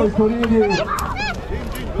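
A man's voice over a loudspeaker, loud and distorted, talking on, with a higher-pitched shout about a second in.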